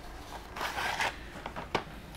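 A plastic kit sprue and a folded paper instruction sheet slid out of a thin cardboard box: a rustle of paper and card, with a few light clicks.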